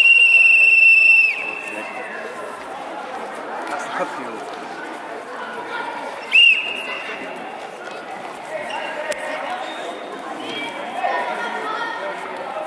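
Referee's whistle in a wrestling bout: one long, shrill blast of about a second and a half at the start, then a short blast about six seconds in, over steady chatter of voices in the hall.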